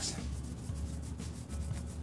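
Gloved hands rubbing paste wax onto a steel auger bit, a few irregular scrubbing strokes.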